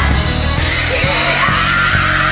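Old-school gospel song: a lead vocal sung over a band with bass, the voice coming in with a sliding line about halfway through.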